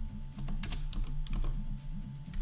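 Computer keyboard being typed on: a handful of separate key presses spread irregularly through the two seconds.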